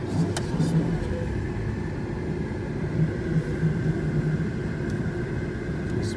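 Car running and rolling, heard from inside the cabin: a steady low rumble of engine and tyres.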